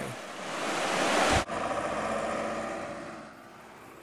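Shallow river rushing over rocks and small rapids: a steady rush of water that changes abruptly about a second and a half in, then grows quieter and fades out near the end.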